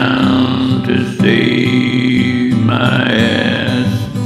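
A man singing three long drawn-out notes without clear words over steady acoustic guitar accompaniment.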